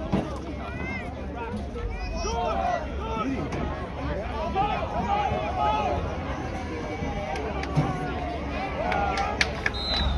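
Overlapping voices of players and sideline spectators talking and calling out during a football play. Near the end comes a short, steady, high whistle blast, a referee's whistle ending the play.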